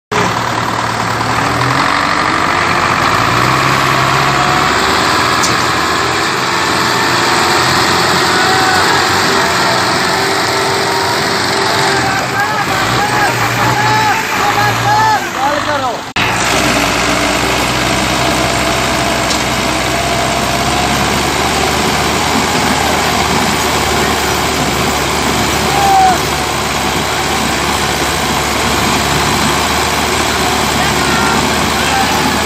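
Diesel engines of two tractors, a Belarus 80 hp and a Massey Ferguson 360, running loudly while chained together in a tug-of-war, labouring under heavy load by the end. People shout over the engines, and the sound breaks off abruptly about halfway through before the engines carry on.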